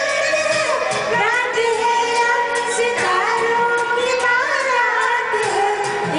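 A woman singing a Hindi film song over a karaoke backing track with a steady beat.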